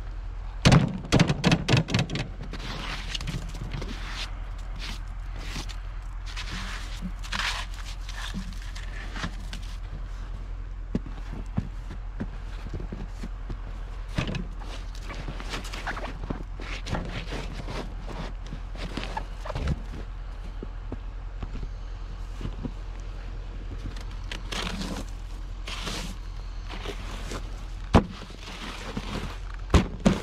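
Hands brushing and knocking snow off the plastic hood and controls of a snow-covered Craftsman riding tractor: a quick run of sharp knocks about a second in, soft scrapes and thunks after that, and two sharp knocks near the end.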